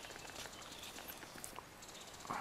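Quiet forest ambience with a few faint clicks and light rustles, the loudest clicks about a second and a half in.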